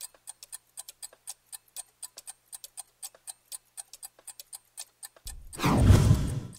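Clock-ticking sound effect, quick and even at about five ticks a second, then a loud swell of noise, a transition whoosh, near the end.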